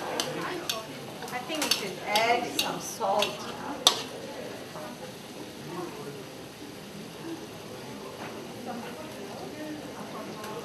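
A metal spatula scrapes and knocks against a steel wok as chicken is stir-fried in oil, over a low frying sizzle. A sharp clank of the spatula on the wok comes about four seconds in.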